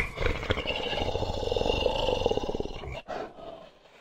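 A growling, animal-like roar sound effect accompanying a werewolf logo animation, one rough sustained roar of about three seconds that breaks off and trails away into silence near the end.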